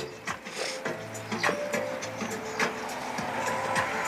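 Faint background music under outdoor street noise, with scattered small clicks and knocks.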